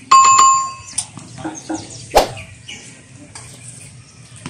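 A bright bell chime rings for just under a second at the start, then a tennis racket strikes the ball sharply about two seconds in.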